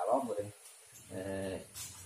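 Conversational speech: a fragment of words, a brief pause, then a drawn-out, steady-pitched hesitation sound from a speaker.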